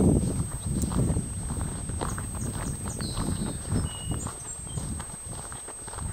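Footsteps walking across a mown, dry grass field: a steady run of soft low thuds.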